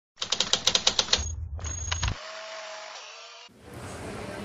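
Typewriter sound effect: a quick run of keystrokes, about eight a second, then a bell-like ring and a few more strokes, fading out with a steady tone.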